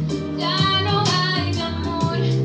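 A woman singing over backing music with a bass line and a beat.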